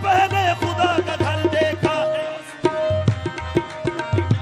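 Live qawwali music: voices singing over harmonium and tabla. The singing fills the first half, the music dips briefly a little after halfway, then tabla strokes and a held harmonium note come back strongly.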